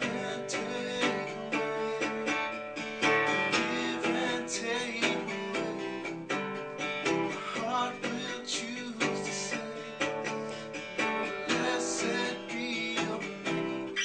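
Acoustic guitar strummed in a steady rhythm, a few strokes a second, with ringing chords that change every few seconds through a progression.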